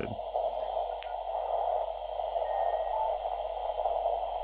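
Chinese uSDX/uSDR QRP transceiver's receiver audio from its speaker: a steady, narrow hiss of band noise through the CW filter as the radio is tuned down the 20-metre CW segment, with a short click about a second in and a faint brief tone or two.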